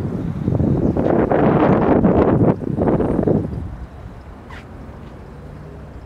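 Wind buffeting a handheld camera's microphone outdoors, loud and gusty for about three and a half seconds, then dying down to a low steady rumble.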